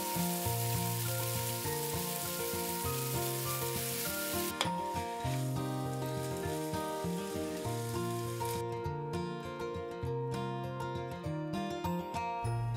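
Spaghetti sizzling in hot oil in a frying pan as it is tossed. The sizzle weakens about halfway through and drops away near the end, leaving scattered clicks and taps. Background music with a melody plays throughout.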